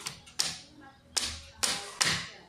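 A run of sharp impacts, about four in two seconds at uneven spacing, each dying away quickly.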